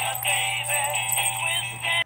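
Animated plush Christmas toy singing a Christmas song in a tinny electronic voice with music from its built-in speaker. The song cuts off suddenly at the end.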